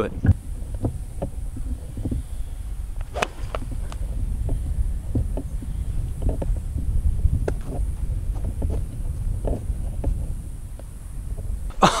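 Wind rumbling on the microphone, with scattered faint ticks. A sharper click about three seconds in fits a 7-iron striking a golf ball off the tee.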